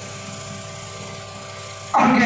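A steady hum made of several held tones under a light hiss. A man's amplified voice starts again just before the end.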